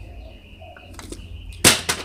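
A single short, sharp clatter near the end from a plastic water bottle knocking on concrete.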